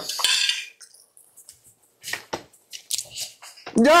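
A fork clicking and scraping against a plate several times, short sharp contacts, mostly around the middle of the stretch.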